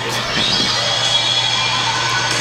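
Anime power-up sound effect: a steady rushing hiss of a glowing energy aura, with a faint high whine held over it.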